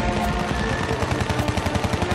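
A fast, even rattle of sharp hits, about ten a second, like machine-gun fire, over music.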